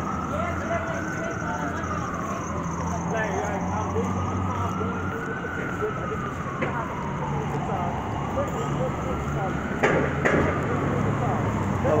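An emergency vehicle siren wailing, its pitch slowly rising and falling about every four to five seconds, over city street traffic noise.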